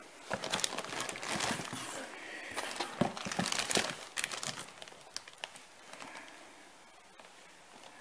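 Clear plastic bags wrapped around coiled cables crinkling and rustling as they are handled in a cardboard box. The sound comes in irregular bursts, loudest around three to four seconds in, and dies away over the last few seconds.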